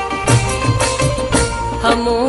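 Loud timli folk dance song in an instrumental passage between sung lines: a steady drum beat under a held melody.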